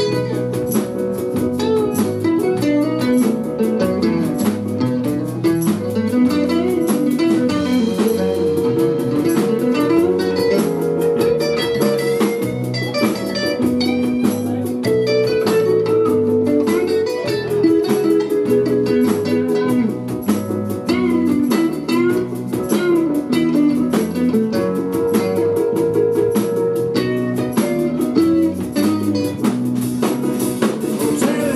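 Live blues band playing an instrumental passage: drum kit and bass guitar under guitar and keyboards, with long held notes and bending lead lines.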